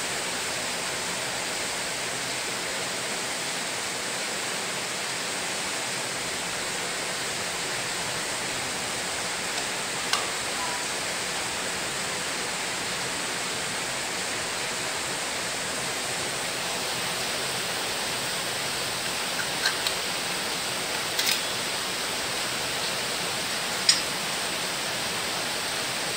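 Steady, even hiss throughout, with a few short sharp clicks as a screwdriver works the screws out of the metal case of a fibre media converter.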